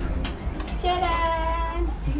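A person singing one long held note, about a second long, over a steady low hum.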